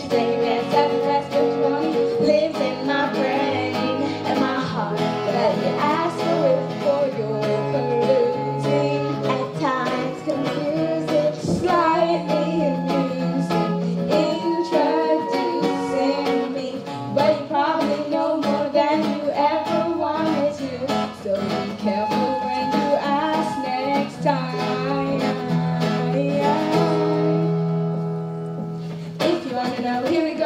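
Live band accompaniment of a pop song, with acoustic guitar, keyboard and flute over held bass notes, continuing without a break.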